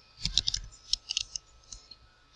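Computer keyboard typing: quick key clicks in two or three short runs with brief pauses between them.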